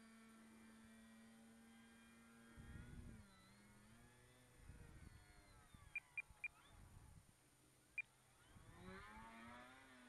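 Faint hum of the Durafly Tundra RC plane's electric motor and propeller in flight. The steady tone drops in pitch about three seconds in, then wavers and climbs again near the end as throttle and distance change. A few low rumbles and four short high pips come through in the middle.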